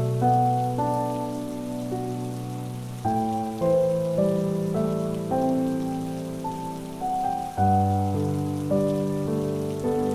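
Slow, soft cello and piano music: struck piano notes that fade away over held low notes, with the harmony changing about three seconds in and again near eight seconds. A steady patter of rain runs underneath.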